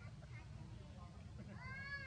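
A macaque gives a high, mewing coo call near the end that rises and then holds its pitch, over a steady low rumble.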